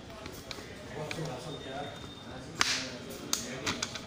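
A sharp snap about two and a half seconds in, followed by a few quicker clicks on a hard floor, over faint background voices.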